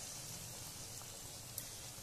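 Besan-battered raw banana slices deep-frying in hot oil in a kadhai: a steady, fairly faint sizzle.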